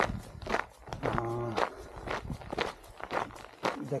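Quick footsteps crunching on a gravel track at a brisk jogging pace, about two steps a second, with a short burst of the walker's voice about a second in.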